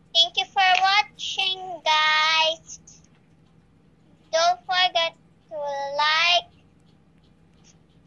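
A young girl singing short phrases over a video call, heard through the phone's speaker: a few quick notes, then one held note about two seconds in, a run of short notes past the four-second mark, and another held note near six seconds.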